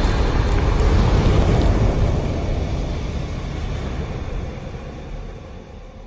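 Logo-intro sound effect: a low, noisy rumble left over from a fiery whoosh-and-boom, dying away steadily over several seconds.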